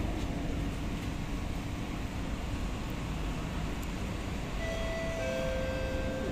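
Steady low rumble inside a stationary Kawasaki–CRRC Sifang C151A MRT car standing at the platform with its doors open. About four and a half seconds in, a pair of steady tones starts, then gives way to a lower pair.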